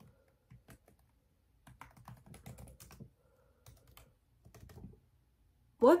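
Computer keyboard keys being typed in short clusters of clicks with pauses between them.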